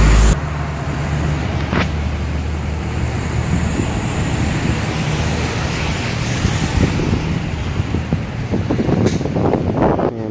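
Steady traffic noise with the hiss of tyres on wet pavement, with a sharp click about two seconds in.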